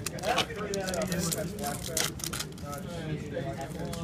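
Voices talking in a busy room, under the rustle and crinkle of a foil booster pack being torn open and trading cards being handled, with a few sharp clicks.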